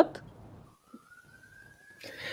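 A faint single tone that begins about two-thirds of a second in and slowly rises in pitch.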